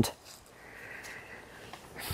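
A soft breath drawn in through the nose, lasting a little over a second, in a pause between sentences.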